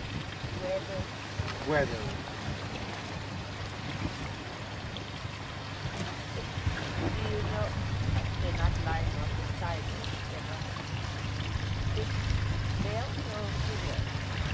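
A small boat's outboard motor idling with a steady low rumble that grows stronger about halfway through, over water washing against the rocks and wind on the microphone. A few faint voices come and go.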